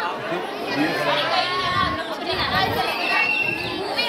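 Several people chatting over one another, voices overlapping.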